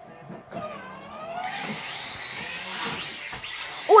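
Small toy quadcopter drone's electric motors and propellers spinning up and running with a steady whirring hum that grows louder from about a second and a half in.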